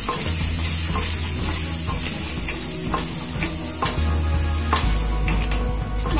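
Chopped garlic, cumin seeds and dried red chillies sizzling in hot oil in a stainless steel kadai, stirred with a wooden spatula that scrapes and taps against the pan now and then.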